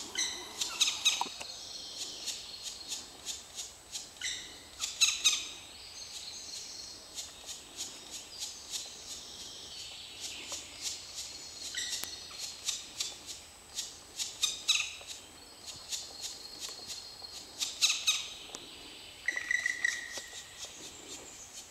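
Black woodpecker nestlings begging from the nest hole: a continuous high-pitched chatter with clusters of sharp ticks every few seconds. A short clear note sounds near the end, as an adult comes in to feed.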